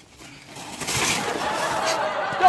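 A loaded metal wheelbarrow tipping over and its load of sand and gravel spilling out onto gravel, a rush about a second in, with a wavering high-pitched sound running over it to the end.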